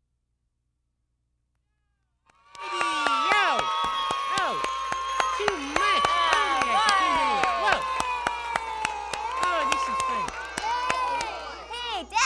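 A group of children cheering, shrieking and clapping. It starts suddenly out of silence about two seconds in.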